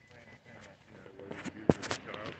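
Jacket zipper being pulled up near the end: a loud knock from handling, then a few quick rasps of the zipper.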